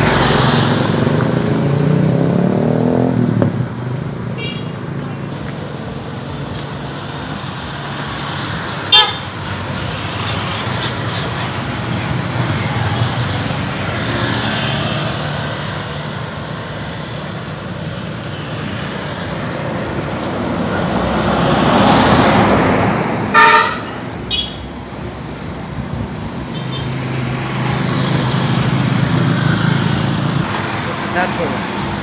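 Road traffic going by, with a vehicle passing close near the start and another swelling past around twenty-two seconds in. Short horn toots sound about nine seconds in and twice more around twenty-three seconds.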